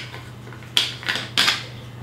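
Two brief knocks, about two-thirds of a second apart, as a plastic bottle is handled and set down on a table.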